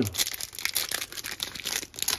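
Plastic wrapper of a Donruss Optic football card pack being torn open and crinkled by hand: a rapid, irregular crackle.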